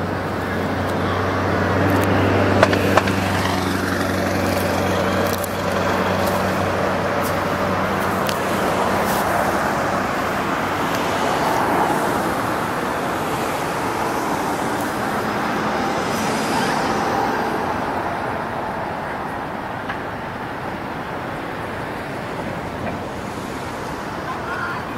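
Motor-vehicle engine hum over a steady rush of road and traffic noise; the low engine hum fades out about ten seconds in, leaving the even rush, with two brief clicks a few seconds in.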